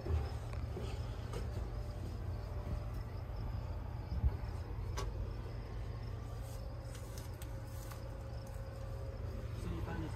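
Gleaner S98 combine's AGCO Power diesel engine running steadily, a low continuous rumble, with a faint steady whine in the second half and a single sharp click about five seconds in.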